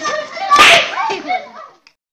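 Voices shouting and yelling, with one loud yell about half a second in, then fading away to a brief silence just before the end.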